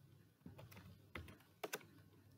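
Faint typing on a computer keyboard: a few separate, irregularly spaced keystrokes as a word is entered.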